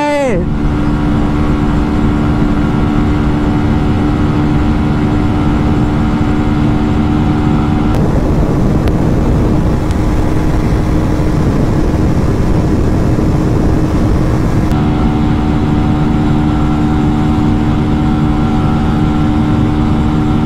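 Honda Shine 125's single-cylinder engine running at a steady high pitch at full throttle, with wind rush on the microphone. From about eight to fifteen seconds in, the sound switches to the KTM RC125's single-cylinder engine at speed, with a noisier, hissier wind rush, before the Shine's steady engine note returns.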